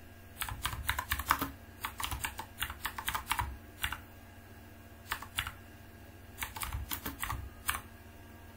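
Computer keyboard being typed on in several short bursts of quick keystrokes, with a pause of over a second around the middle, as a command is entered.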